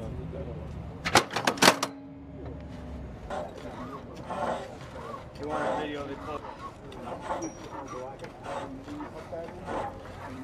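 Four sharp knocks in quick succession about a second in, then indistinct voices of a gun crew at a towed howitzer.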